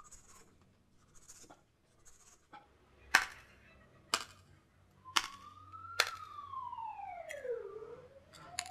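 A large knife cutting the husk of a young green coconut: a few soft scraping strokes, then four sharp knocks from the blade about a second apart. Over the last three seconds a single tone rises, falls slowly and begins to rise again.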